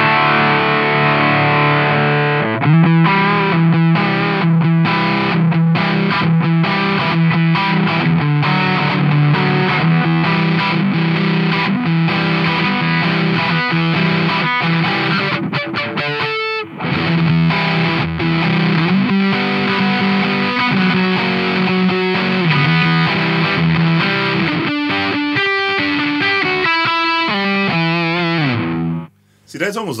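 Electric guitar through a Doomsday Effects Cosmic Critter Fuzz pedal, playing heavily fuzzed, sustained chords and riffs. There is a short break about halfway through, and the playing stops just before the end.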